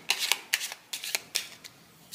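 A deck of Lenormand oracle cards handled in the hand as a card is drawn: a quick run of short, crisp card flicks and snaps that thins out near the end.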